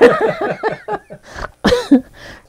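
Laughter: a quick run of ha-ha pulses for about a second, then a few short breathy bursts of laughing.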